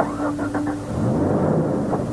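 A brief knock, then a Jeep Wrangler's engine cranking, catching and revving, over a steady low music note.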